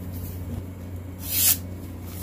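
A sheet of paper rustling once, a short hiss a little past halfway, as it is handled for a sharpness test with a balisong razor. A low steady hum runs underneath.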